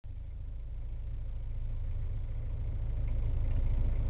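Boat engine idling, a steady low rumble that grows slightly louder.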